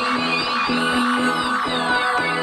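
Electric guitar through a small combo amp, playing quick, evenly repeated picked chords with no singing.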